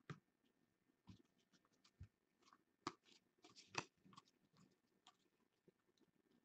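Football trading cards handled and slid against one another as they are sorted by hand: faint, scattered soft clicks and rustles, with a couple of sharper snaps about three and four seconds in.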